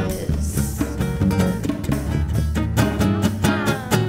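Live band playing an instrumental passage: plucked nylon-string guitar and electric guitar over a hand-drum beat and keyboard, with no singing.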